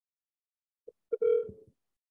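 A phone's electronic call tone as a call is placed: a faint blip, then a single steady beep lasting about half a second.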